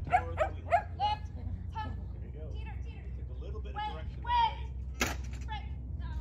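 A dog barking in quick, high yips during an agility run: several in a row in the first second, then more scattered calls, with a longer one around four seconds in.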